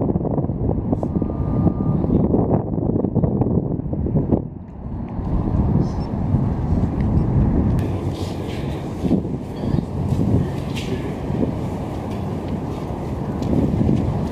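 Wind buffeting the microphone outdoors: a loud, rough rumbling noise that dips briefly about four and a half seconds in.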